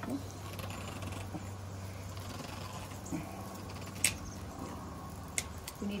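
A stuck jar lid being worked at by hand, with a sharp click about four seconds in and a lighter one about a second later, over a steady low hum.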